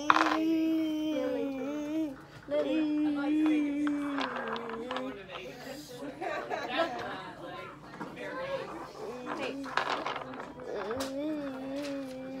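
A young child's voice in long, drawn-out sounds without clear words, in three stretches, with broken speech-like voicing between them.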